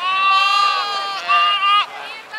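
A sheep bleating loudly twice, close by: one long call of about a second, then a shorter one whose pitch falls away at the end.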